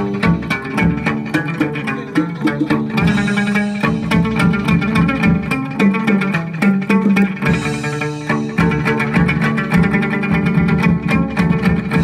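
Chầu văn ritual music: a plucked lute playing over a steady, fast run of sharp percussion clicks.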